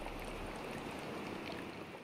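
Underwater ambience: a steady, even rush of water noise that starts to fade near the end.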